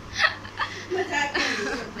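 A girl and a woman laughing together, a few short chuckling bursts.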